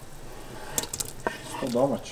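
Wooden spoon scraping and knocking on a bamboo cutting board as halved cherry tomatoes are pushed off into the pot, with a few sharp knocks about a second in.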